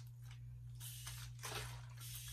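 Continuous-mist spray bottle misting water onto hair: a short hiss of spray about a second in.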